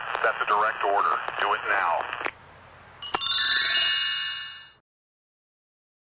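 A short voice clip that sounds thin and narrow, then, about three seconds in, a bright ringing chime that starts with a click and fades out within about two seconds, ending in dead silence.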